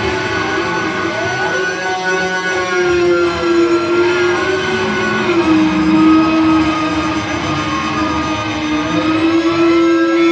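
Loud sustained electronic drone from a band's amplified instruments: one strong low tone that steps down in pitch about halfway through, with higher tones sliding up and down over it and no beat.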